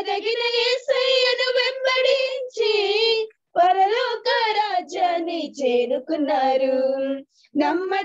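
A young female voice sings a Telugu Christian devotional song solo and unaccompanied, in long held phrases with vibrato. It breaks off for breath about three seconds in and again near the end.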